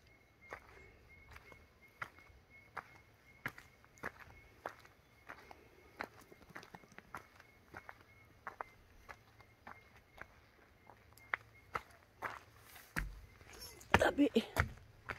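Footsteps of a person walking along a dry dirt bush trail, short crunching steps at an even walking pace, about one and a half a second. There is a low bump near the end.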